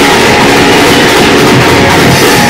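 Loud live praise music from a church band with keyboard and drum kit, recorded harsh and distorted.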